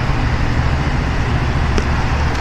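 Steady low rumble of vehicle engines idling and street traffic outdoors, with a faint click near the end.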